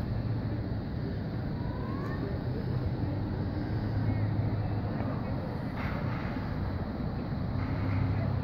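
Steady city road traffic with a low engine hum that swells about four seconds in.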